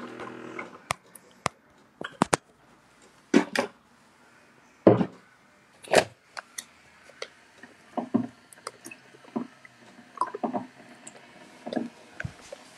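A series of irregular clicks and knocks, with a few louder thumps in the middle.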